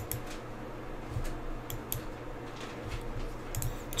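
A few scattered computer mouse clicks over a faint steady low hum.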